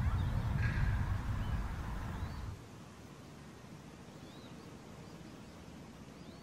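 Wind noise on the microphone for about the first two and a half seconds, cutting off suddenly. After that, faint outdoor ambience with a few scattered small-bird chirps.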